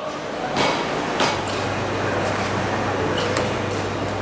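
Background noise of a busy indoor meat market hall, with a few sharp knocks and clinks and a low steady hum that sets in about a second in.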